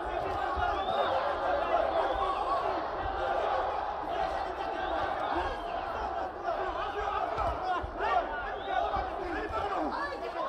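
Arena crowd of many voices talking and shouting, with occasional louder individual shouts.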